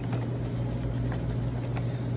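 Steady low hum of running kitchen equipment, with faint light rustling of gloved hands in a paper flour bag.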